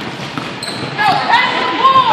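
Basketballs bouncing on a hardwood gym floor during a pickup game, with sneakers squeaking on the court from about a second in. It all echoes in the large hall.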